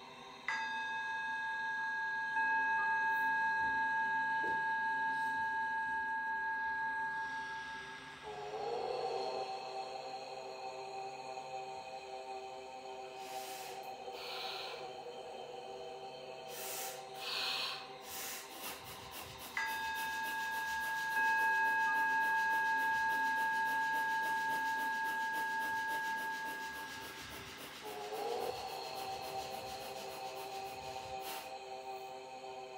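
Ambient background music of long, held, ringing tones. A new pair of tones starts sharply about half a second in, gives way to a lower cluster of tones about eight seconds in, and the same sequence comes round again about twenty seconds in.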